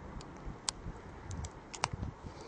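Wind rumbling on the microphone, with a few sharp clicks: one about a third of the way in and a quick pair near the end.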